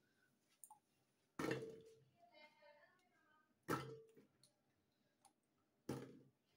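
Wet water chestnuts dropped by hand into an aluminium pot: two sharp knocks with a short ring, about a second and a half and nearly four seconds in, and a few light clicks between.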